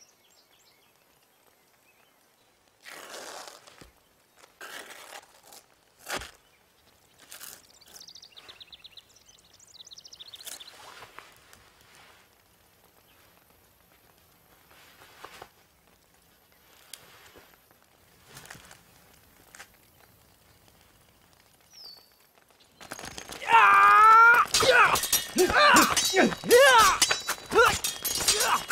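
A long, quiet stretch of sparse scuffs and rustles like boots shifting on gravel, then, near the end, a loud battle breaks in: many men shouting and yelling, with metal weapons clashing.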